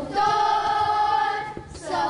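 A group of children singing together in chorus, holding one long note, then a short break and the next phrase beginning near the end.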